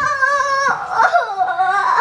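A young girl wailing loudly in pain, crying out 'aayo'. One long, high cry breaks off about two-thirds of a second in, and a second wavering wail follows.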